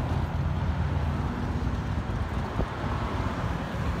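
Harley-Davidson Dyna Super Glide Custom's V-twin engine idling steadily through Python slip-on mufflers, a low, even rumble.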